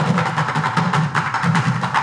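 An ensemble of drummers striking upturned plastic paint buckets with drumsticks, playing a fast, dense, steady rhythm of sharp knocks.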